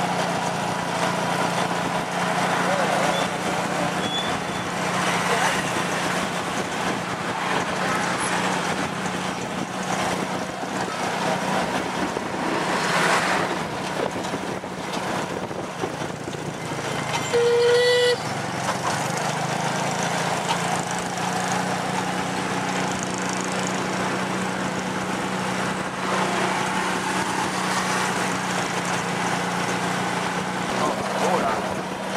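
Motorbike engine of a tuk-tuk running steadily under way, heard from the passenger carriage, with street traffic around. A vehicle horn gives one short toot about seventeen seconds in, the loudest moment.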